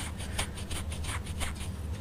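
A coin being rubbed between the fingertips with wet bicarbonate of soda paste: quick, irregular scratchy rubbing strokes, several a second, over a low steady hum.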